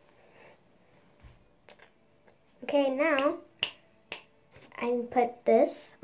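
A young girl singing a few short phrases with a wavering pitch, starting about halfway through, with two sharp clicks between the phrases.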